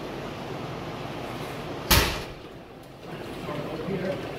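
A single strike landing on a heavy punching bag: one sharp, loud thud about two seconds in that dies away quickly.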